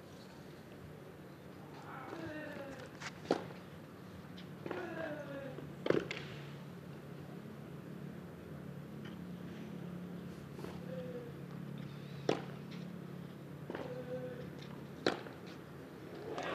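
Tennis rally on a clay court: a handful of sharp racquet-on-ball strikes a few seconds apart, the two clearest a few seconds in. Short falling-pitch grunts from the players lead into those strikes, over a low steady hum.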